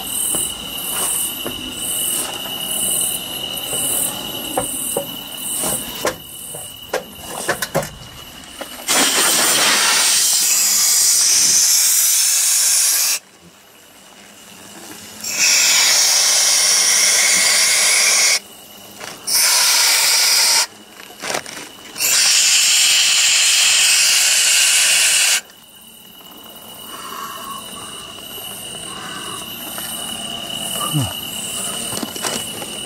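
Aerosol insecticide can spraying into a hornet nest in four long hissing bursts of a few seconds each, starting about nine seconds in. Before and after the spraying, insects chirp steadily in one high, even tone.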